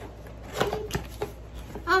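Packaging being unwrapped by hand: a few short crinkles and taps.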